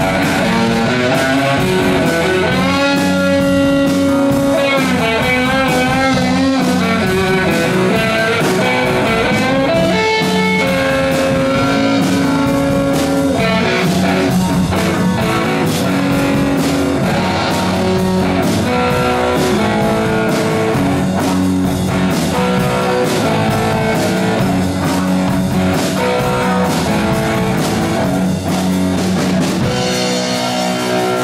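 Live rock band playing with electric guitars, bass and drum kit. A guitar plays wavering, bending notes a few seconds in.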